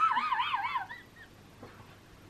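A woman's high-pitched giggle, its pitch wavering up and down, trailing off within the first second, then quiet.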